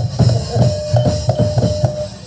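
Live Javanese gamelan music accompanying Barongan dance: drum strokes about three a second, with a held ringing note through the middle.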